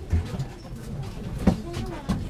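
Passengers stepping off a funicular car: low thuds of footsteps on the car floor and a sharper knock about one and a half seconds in, over murmured voices.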